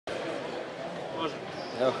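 Steady background noise of an indoor sports hall with faint voices, before a man starts speaking close to the microphone near the end.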